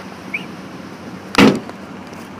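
A door of a 2003 Dodge Durango being shut, one loud thump about one and a half seconds in.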